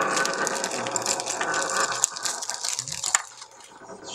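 A toy spinning top rattling and scraping on a grainy tabletop as friction slows it, with a sharp click about three seconds in, after which the sound drops away.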